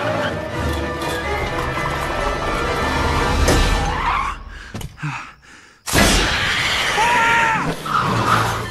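Film soundtrack: music mixed with car sound effects. It falls nearly silent for about a second around five seconds in, then comes back suddenly and loud.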